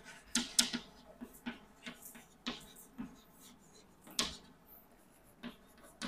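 Chalk writing on a blackboard: an irregular string of sharp taps and short scrapes as the letters are written, loudest a little after the start and again about four seconds in.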